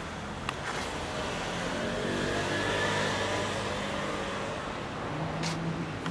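Motor vehicle engine running steadily, with a sound that swells louder and richer in pitch about two to three seconds in, like a vehicle passing. A sharp click about half a second in.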